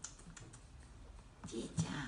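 A kitten's claws and paws clicking and tapping on a hard plastic tub as it walks about on it: a few scattered light clicks.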